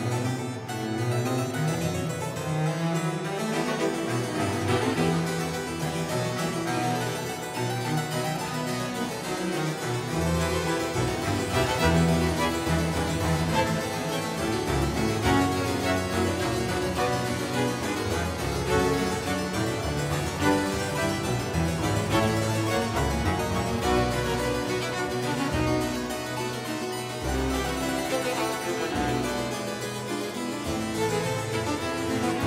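Two harpsichords, one a Boston instrument of 2001 and one by Ivan de Halleux of Brussels, playing Baroque music together without a break.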